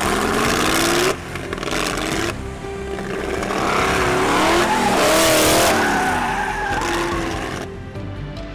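A car engine revving up and down while its tyres squeal and skid as the open tube-frame prototype sports car spins on asphalt; the squeal is loudest about five seconds in.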